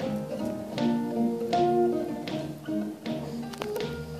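Solo acoustic guitar played live, picked notes ringing and decaying, with sharp accented attacks about every three quarters of a second and a note sliding up near the end.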